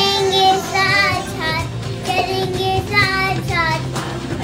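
A young child singing a song, with music playing behind the voice.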